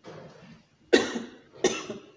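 A person coughing twice, two short sharp coughs about three quarters of a second apart.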